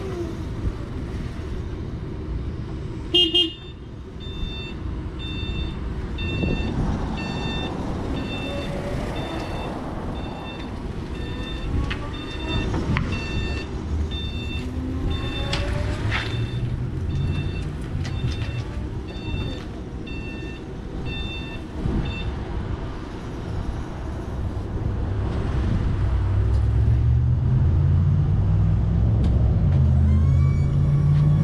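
Lift Hero CPD30 80V lithium-ion electric forklift driving: a short horn toot about three seconds in, then a repeating warning beeper from about five seconds until about twenty-two seconds, over the electric drive's whine rising and falling with speed. A low drone grows louder over the last several seconds.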